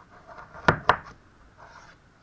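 Chef's knife cutting down through a hard raw carrot and striking a plastic cutting board: two sharp knocks about a fifth of a second apart.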